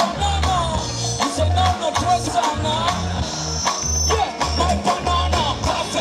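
Live band music with a steady bass beat, about two pulses a second, with the male performer singing into a handheld microphone over it.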